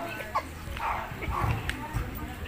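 Indistinct voices of several people talking at once, with a couple of brief sharp clicks.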